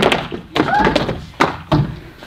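Dancers' feet landing with three sharp thuds on the practice-room floor, and young women's voices calling out between them, with no music playing.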